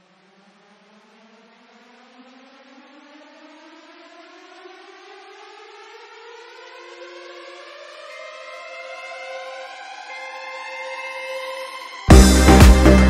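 Electronic synth riser in a house track's intro: a pitched tone rising out of silence that glides steadily upward in pitch and swells in loudness. A few held synth notes join it in the second half, building toward the drop.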